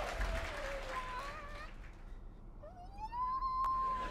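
A man singing along in a car as the backing music drops away. Near the end his voice slides up into one long held high note, with a short click partway through it.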